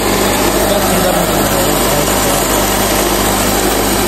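Small rice-milling machine running steadily as it hulls paddy into rice: a loud, even mechanical drone with a constant low hum.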